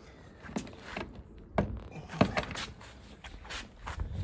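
Hands working an MGB's vinyl packaway hood, pulling the fabric tight and fastening its clips to the car body: a string of irregular soft knocks and clicks, the sharpest about one and a half and two seconds in.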